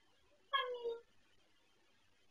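A kitten mews once: a short, high call about half a second long that falls slightly in pitch.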